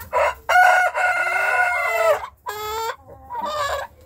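A young rooster crowing: a short opening note, then one long held note that drops in pitch at its end, followed by two shorter calls.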